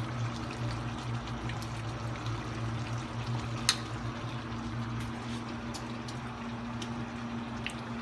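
Dinuguan (pork blood stew) simmering and bubbling in a wide wok on a gas burner, a steady bubbling hiss over a low steady hum, while the stew reduces. One sharp click comes a little before halfway.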